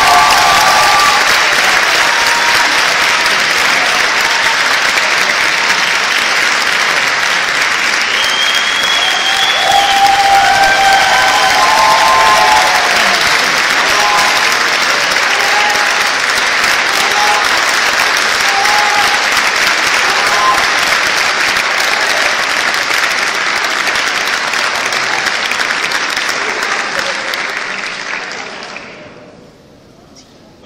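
Large audience applauding loudly and cheering at length, with a few shouts over the clapping; it dies down at the very end.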